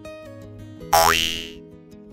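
Light acoustic-guitar background music, cut across about a second in by a loud cartoon sound effect: a quick upward-sliding boing-like tone that fades within about half a second.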